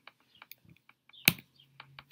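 Scattered light clicks and taps at a computer, with one sharper, louder click just over a second in as the presentation slide is advanced.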